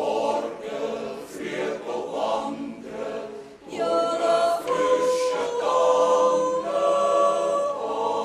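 Choir singing. The first half has moving, syllable-by-syllable phrases; from about halfway the voices hold sustained chords that change every second or so.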